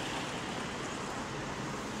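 Steady traffic noise from a busy multi-lane road: an even rushing hiss of cars and engines with no single vehicle standing out.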